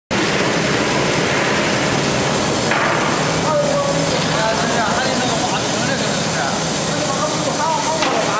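A stainless-steel sesame cleaning and washing line running: a loud, steady mechanical din with a low hum, with voices talking in the background.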